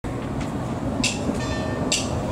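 Brass band playing: a dense body of low brass with two bright percussion strokes, about a second in and at the end.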